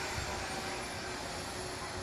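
Steam locomotive C62 2 giving off a steady hiss over a low rumble.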